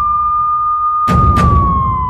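A police siren wail holds one steady high pitch, then slowly slides down about halfway through. A short thud sounds about a second in, over low rumble.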